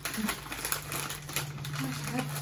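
A crinkly plastic snack bag rustling and crackling in quick, irregular clicks as hands dig into it for chips.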